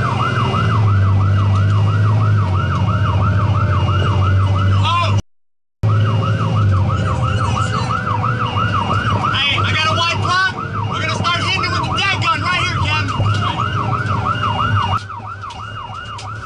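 Fire engine's electronic siren on a rapid yelp, sweeping up and down about four times a second, over the truck's low engine drone while it drives to a working fire. Cut off briefly by a gap about five seconds in; the siren stops about a second before the end.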